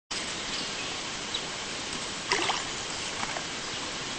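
Steady outdoor background hiss with soft water sounds from a man moving in lake water, and a brief, slightly louder sound a little over two seconds in.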